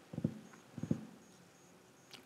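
Two brief clusters of soft taps, about two-thirds of a second apart.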